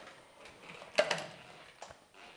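A single short knock about a second in as a large round push-button call switch is pressed by hand, then a faint tick near the end.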